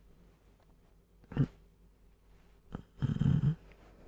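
A man snoring in his sleep: a short snort about a second and a half in, then a longer, rattling snore near the end.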